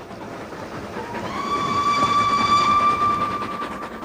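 Steam train running, its noise swelling, with the locomotive's steam whistle sounding one long steady note from about a second in until near the end.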